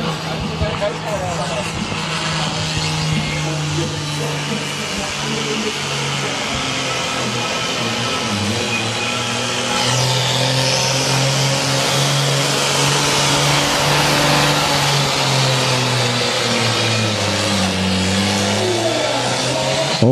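Deutz 13006 pulling tractor's diesel engine under full load, hauling the weight sled down the track. It runs steadily, gets louder about halfway, and its pitch sags lower toward the end as the pull grows heavy.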